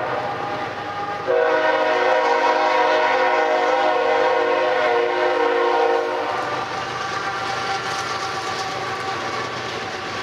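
A BNSF diesel locomotive's air horn sounding a chord of several notes: one blast trails off just after the start, then a long, loud blast runs from about a second in until about six seconds in. After it stops, the train rolls past with engine noise and the rumble and clatter of loaded coal hopper wheels on the rails.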